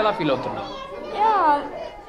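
Voices: a woman speaking, with children's voices chattering and calling in a large hall, one high voice loudest a little after the first second.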